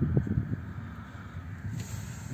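Car engine idling steadily with the bonnet open, with some wind noise on the microphone.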